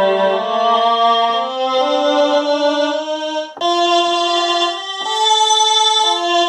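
A sampled one-shot sound played from a keyboard in Native Instruments Maschine, its AHD envelope's hold lengthened so that each held key gives a long, sustained note. Notes are held and overlap in a slow stepwise line, with a fresh chord struck about three and a half seconds in and another about five seconds in.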